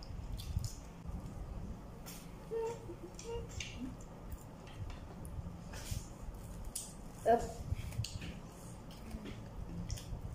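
Children eating at a table: scattered soft chewing and mouth sounds with small clicks of forks on plates, and a short hum from a voice about seven seconds in.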